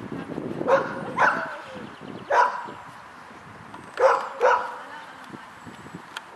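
A dog barking five times: two quick barks, a single bark, then two quick barks again.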